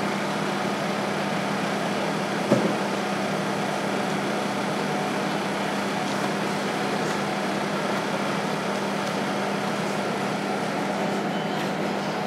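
Steady background hiss with a constant low hum, like air-conditioning or room noise, with one faint knock about two and a half seconds in.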